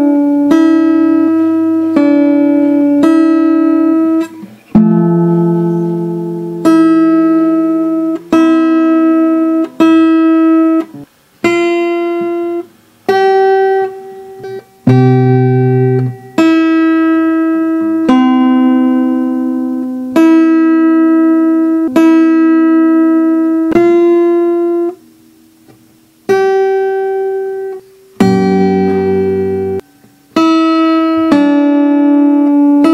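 Acoustic guitar played fingerstyle, a picked melody over bass notes through Am, C and G chord shapes. Each note or pair of notes rings and dies away, with short breaks between phrases.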